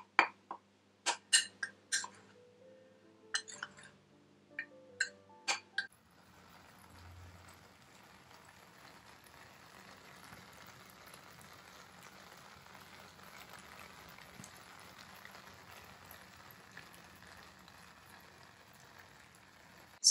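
Metal spoon clinking against a small ceramic bowl while cocoa and powdered sugar are stirred together, about ten sharp clinks over the first six seconds. After that, only a faint steady hiss.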